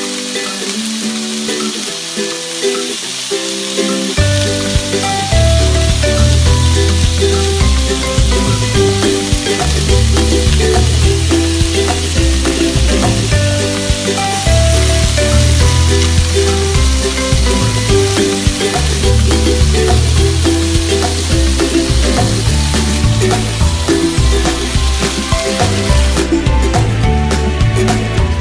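Pork-wrapped enoki mushroom rolls sizzling in oil in a frying pan, under background music whose bass line comes in about four seconds in.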